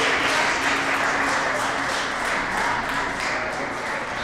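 A group of people applauding with many quick claps, with laughter and a few voices mixed in.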